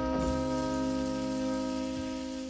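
Trumpet and tenor saxophone holding the final D-flat major 7 chord of a 1955 jazz quintet recording, steady under a hiss.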